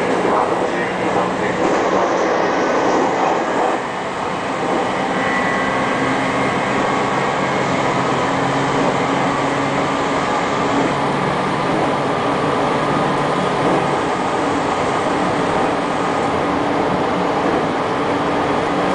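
JR Kyushu 813 series electric train running at speed, heard from inside behind the driver's cab: a steady rumble of wheels on the rails with a steady hum that shifts in pitch about three quarters of the way through.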